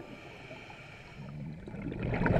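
Faint, muffled underwater noise of scuba divers' exhaust bubbles, growing louder near the end.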